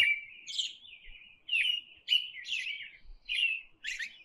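A bird chirping: a run of about eight short, high chirps roughly half a second apart, stopping just after the picture cuts away.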